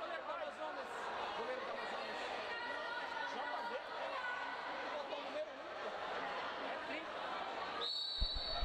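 Faint overlapping voices of players and spectators talking and calling out in a sports hall, with no single loud event.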